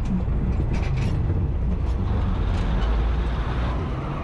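Train engine running with a steady low rumble as the train approaches along the market tracks.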